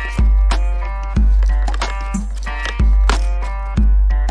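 Background music: deep bass hits about once a second under a plucked string melody.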